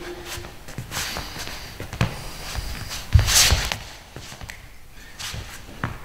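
Sneakers stepping and shuffling on a sports-hall floor as two people close in and grapple, with scattered scuffs and knocks. A heavier thump with a burst of rustling comes about three seconds in.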